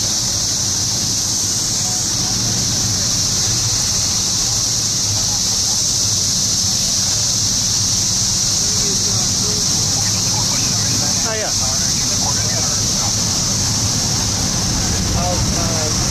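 Fire apparatus engines idling: a steady low diesel hum under a constant high-pitched hiss, with faint distant voices around ten seconds in.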